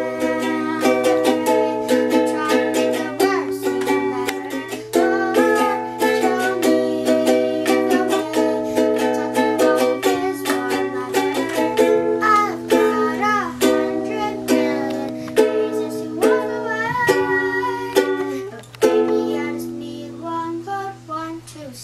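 Ukulele strummed in steady chords, several strums a second, the chord changing every second or so.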